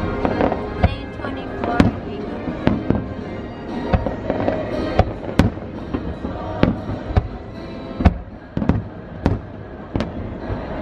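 Aerial fireworks going off in an irregular volley, about fifteen sharp bangs, coming quicker toward the end. Music and voices sound faintly underneath.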